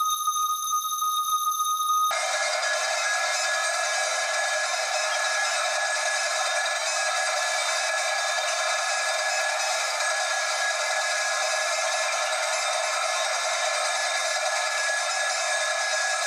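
Electronic music build: a sustained high synth tone, cut about two seconds in by a steady hiss of rain-like noise with all its low end filtered away, held evenly with no beat.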